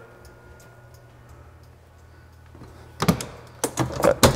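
A steady low hum. About three seconds in, a quick run of sharp clacks as an ambulance side compartment door is swung shut and latched.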